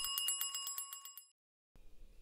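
Electric trembler doorbell ringing: the hammer rattles against the metal bell dome at about a dozen strikes a second, driven by its make-and-break contact, and the ringing fades out about a second in.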